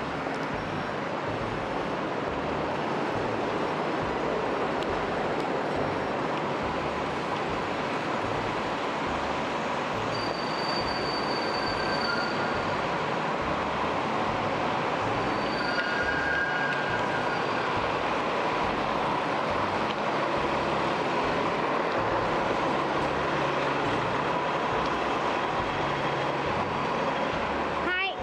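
Busy city-street traffic: a steady din of double-decker buses, taxis and cars running past close by. Brief high squeals rise out of it about ten and fifteen seconds in.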